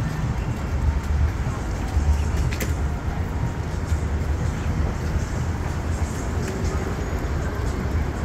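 City street ambience: a steady low rumble of traffic with a haze of street noise.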